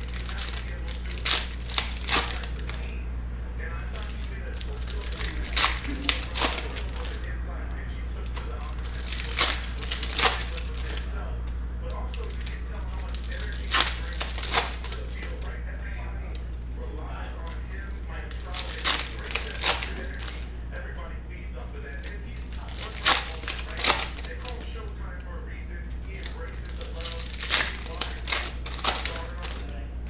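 Foil trading-card pack wrappers being torn open and crinkled by hand, with the cards handled, in short bursts every four or five seconds over a steady low hum.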